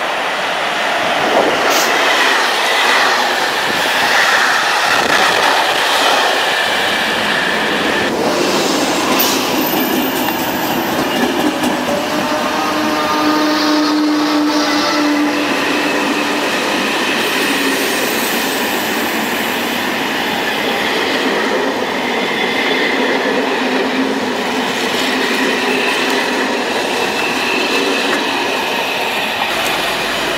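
Trains running past on the rails, a steady rolling noise with wheel clatter and some squealing, and a held tone for a couple of seconds about halfway through.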